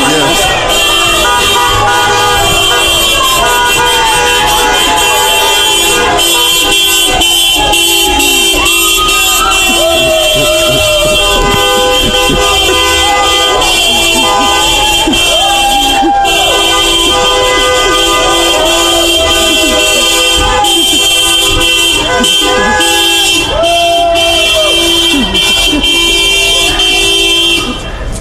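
A din of many car horns held down and honking at once, mixed with people screaming and whooping from passing cars. It stays very loud and constant, then drops off just before the end.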